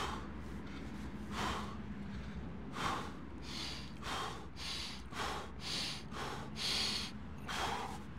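A man taking short, forceful breaths, about one a second and quicker in the middle, as he braces to lift a heavy sandbag load of about 200 lb.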